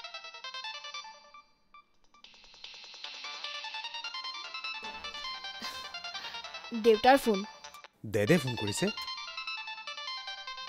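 A smartphone ringtone plays a melody that fades out about a second and a half in. After a short silence a melodic ring starts again and keeps going. Near the end a voice is heard briefly, twice.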